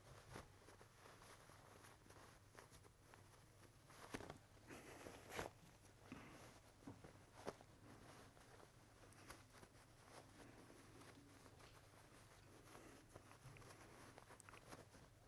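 Near silence, with faint rustling of cotton fabric as a sewn stuffed-bear skin is pulled right side out through its opening; the rustling is a little louder around four to five seconds in and again briefly near eight seconds.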